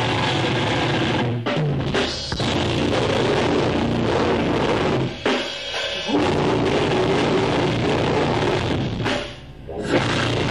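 Live rock band playing loud: electric guitar, bass guitar and a drum kit. The band drops out briefly three times, about a second and a half in, around five seconds in and near the end, then comes back in.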